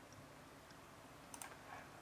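Near silence: room tone, with a few faint quick clicks about one and a half seconds in, likely a computer mouse being clicked.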